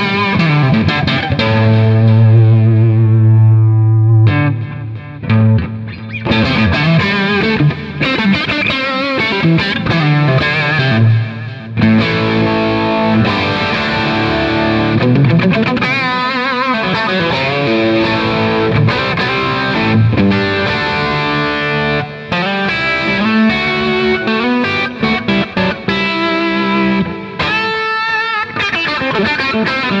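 2003 G&L ASAT Classic electric guitar played through an amplifier: an improvised solo of single-note lines, with a chord left ringing a few seconds in and bent notes with vibrato further on.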